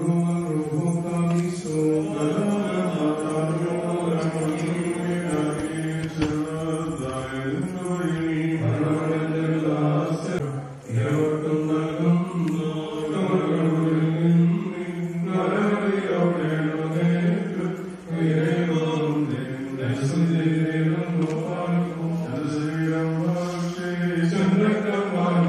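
Priests chanting the funeral service in a sustained, slowly moving melody, with short pauses for breath about ten and eighteen seconds in.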